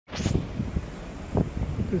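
Wind buffeting the microphone in irregular low rumbling gusts, with a short rustle at the very start.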